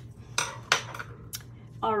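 A few light, sharp clicks and taps as hands handle cardstock and crafting tools on a tabletop.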